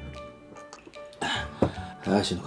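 A man coughs briefly about a second in, his throat burning from very hot chili rice crackers, followed by a sharp knock, over quiet background music.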